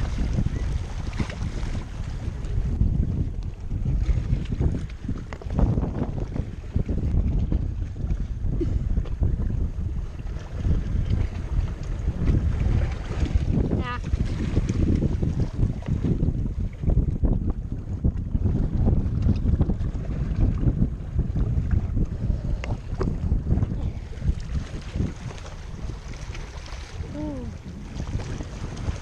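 Wind buffeting an action camera's microphone, a loud, constantly fluctuating low rumble, with small waves washing against the rocks of a breakwater.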